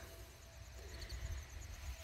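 Quiet outdoor background: a faint low rumble, with a few faint high chirps, a brief one about a second in.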